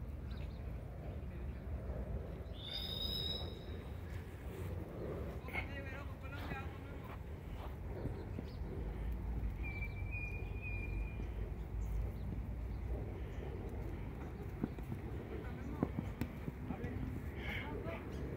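Open-air football pitch ambience: faint distant players' voices over a steady low rumble of wind on the phone microphone, with a brief high whistle about three seconds in and a fainter one around ten seconds.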